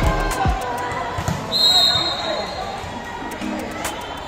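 A volleyball is bounced twice on the hard gym floor near the start, each bounce a low thud. About a second and a half in comes a short, high, steady whistle, typical of the referee's signal to serve. Crowd chatter runs underneath.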